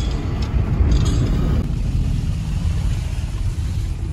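Steady low rumble of engine and tyre noise heard inside the cabin of a moving car.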